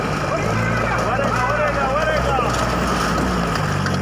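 Toyota pickup truck's engine running at a steady low pitch as the truck works up a steep, rocky track, with men's voices shouting behind it.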